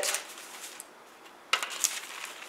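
Newspaper rustling and crinkling as it is handled, in two short spells: one at the start and a sharper one about a second and a half in.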